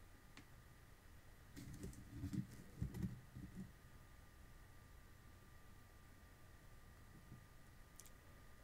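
Near silence, with a brief cluster of faint rustles and clicks from about one and a half to three and a half seconds in as hands pick up and grip the smartphone. A faint steady high whine sits underneath.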